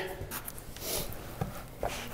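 Soft rustling and shuffling with a couple of light clicks in the second half: a person shifting on a rug and taking hold of a plastic table leg.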